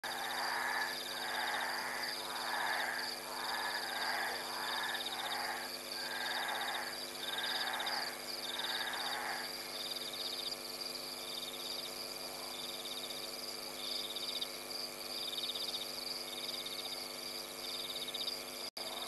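Night-time chorus of frogs and insects. A call repeats about once a second for the first half and then stops, while a high pulsed trill keeps going over a steady high hum.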